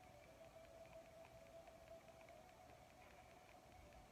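Near silence: a faint steady hum with light, irregular ticking.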